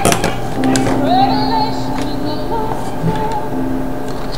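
A song with a singing voice played through a cheap Serioux 2.1 desktop speaker set from an MP3 player, turned up to its maximum, though the volume is very low. A few sharp knocks near the start and about a second and two seconds in as the satellite speakers are handled.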